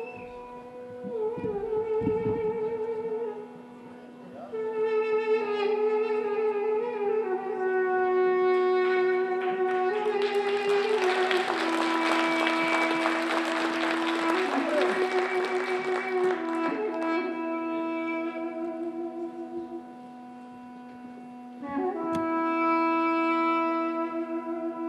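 Armenian duduks playing: one holds a steady low drone (the dam) while the other plays a slow, ornamented melody of long held notes broken by quick trills. For several seconds in the middle, a rushing noise swells up under the music.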